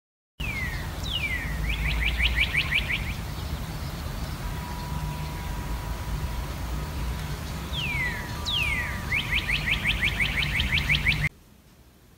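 A songbird sings two phrases over a low steady rumble. Each phrase is a few down-slurred whistles followed by a fast trill of rising notes. The sound cuts off suddenly near the end.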